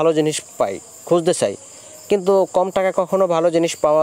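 A man talking in Bengali, with a steady faint high-pitched whine underneath throughout.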